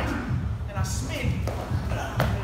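Indistinct voices of people talking in a gym, with background music playing underneath.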